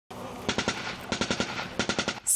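Bursts of automatic gunfire: three short strings of rapid shots, each lasting under half a second, about two-thirds of a second apart.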